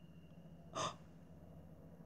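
A single short, sharp gasp from a man, a quick intake of breath a little under a second in; otherwise quiet room tone with a faint low hum.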